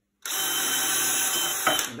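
Cordless drill boring a pilot hole through a wooden batten. The motor runs steadily for about a second and a half, then stops.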